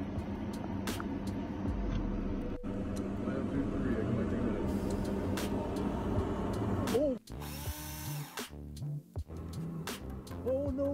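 Steady rumbling noise inside a vehicle's cabin on the airfield, with no clear single source. About seven seconds in, a short voice cry rises and falls, then the sound drops out and goes choppy with a brief hiss.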